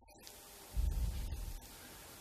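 Low rumble of handling noise on a handheld microphone, lasting under a second, heard over a steady hiss and faint hum from the sound system.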